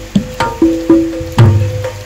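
Jaranan-style band music in an instrumental passage: a run of sharp drum strokes over held low notes, with no singing.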